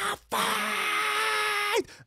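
A man's voice holding one long, strained sung note for about a second and a half, sliding down in pitch as it ends.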